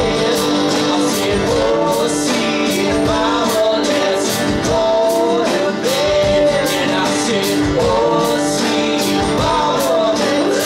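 Live acoustic country-rock band playing: strummed acoustic guitars and a drum kit keeping a steady beat, with a bending melodic lead line over them.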